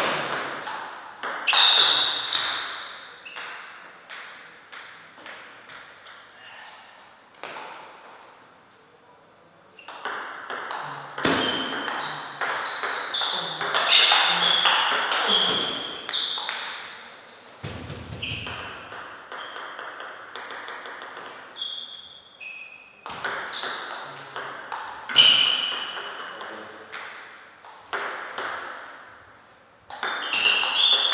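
Table tennis rallies: the ball clicks sharply off the paddles and the table in quick back-and-forth runs of hits, with short pauses between points. There is a low thud near the middle.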